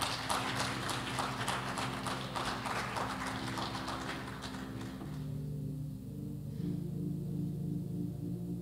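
Sustained keyboard chords, with a rapid clatter of clicks and noise over them that stops about five seconds in, leaving the held chords alone, some notes pulsing.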